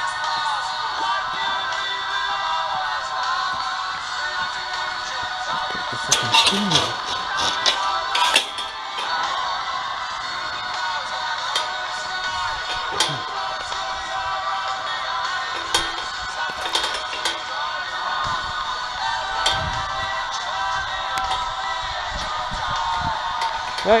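Background music plays throughout, with a few sharp knocks or clatters about a quarter of the way in and again about two-thirds through.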